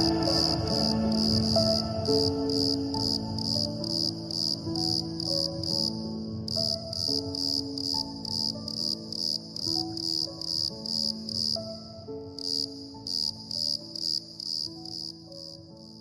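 Crickets chirping in a steady pulse of about two chirps a second, over soft, slow piano notes; both fade out toward the end.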